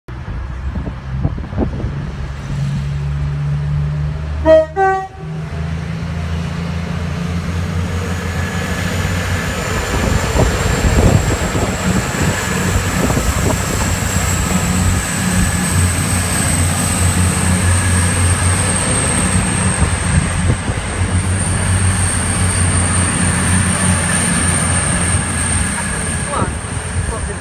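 East Midlands Trains Class 222 Meridian diesel multiple unit giving one short, loud horn toot about four seconds in, then its underfloor diesel engines drone steadily as it moves off past. A high thin whine slowly rises in pitch through the second half as the train gathers speed.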